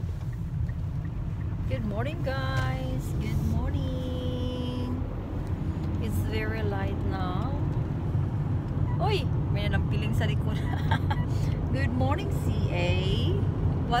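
Steady low rumble of a car driving, heard from inside the cabin, with short snatches of voices over it.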